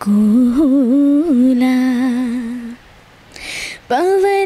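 A woman singing a Nepali song unaccompanied: a long held note with small melodic turns and a slight waver. About three seconds in there is a pause with an audible breath, and the next, higher phrase begins at the very end.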